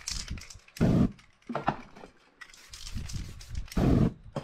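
Aerosol spray-paint can hissing, with handling knocks on the can and paper, and a loud thump about a second in. Just before the end comes a loud low whoosh as the sprayed paint on the sheet catches fire.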